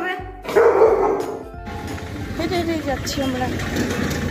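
A dog barks loudly about half a second in, a rough burst lasting about a second.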